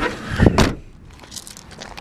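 Tailgate of a Vauxhall Zafira Tourer being shut: one heavy thump about half a second in, followed by a few faint clicks and scuffs.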